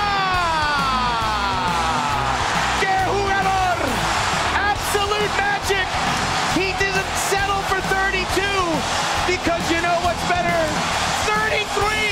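A commentator's drawn-out goal call falls in pitch and trails off over the first two seconds, over a stadium crowd cheering. Excited shouts and yells then sound over the crowd noise.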